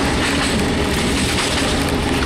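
Steady running noise inside a diesel railcar moving at speed: the engine and the wheels on the rails.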